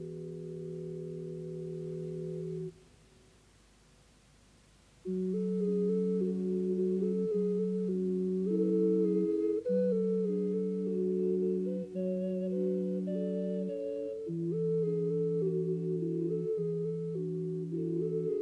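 An ensemble of small hand-held wind instruments with soft, pure, whistle-like tones. A held chord stops about 2.7 s in. After a short pause, a tune in several parts begins about 5 s in, with long low notes under a moving upper melody.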